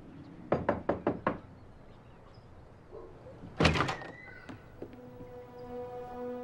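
Knuckles knocking on a wooden front door: about five quick knocks about half a second in, then a louder knock about three and a half seconds in. Held soundtrack music notes come in near the end.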